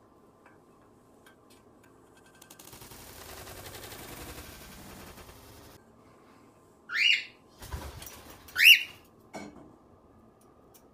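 Cockatiel wings flapping for about three seconds in a short flight, followed by two loud rising cockatiel calls about a second and a half apart, with a thump between them.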